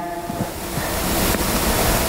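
A loud, steady rush of noise on a handheld microphone, lasting about two seconds, with a deep rumble under a hiss.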